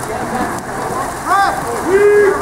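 Steady splashing of water polo players swimming and thrashing in the pool, with a short shout from the poolside about halfway through.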